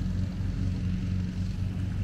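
An engine idling close by, a steady low hum that holds even throughout.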